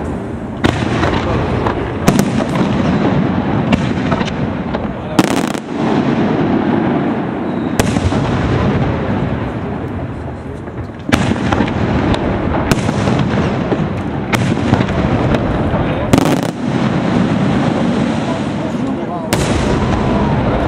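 Aerial fireworks display: shells bursting overhead in sharp bangs every second or two, the loudest about five seconds in and again near sixteen seconds. Between the bangs the display keeps up a dense continuous din.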